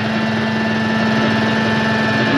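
A loud, steady, distorted drone: one held low tone with a thin high whine above it, over a hiss of noise, as in harsh experimental noise music.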